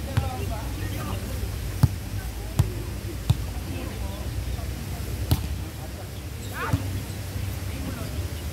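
Volleyball being struck by players' hands and forearms during a rally: a series of sharp slaps, about six in all, unevenly spaced.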